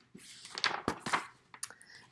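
A picture book's paper page being turned: a soft rustle, with a couple of sharp crackles about a second in.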